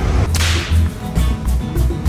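A short swoosh sound effect about half a second in, fading quickly, over background music with a steady pulsing bass beat.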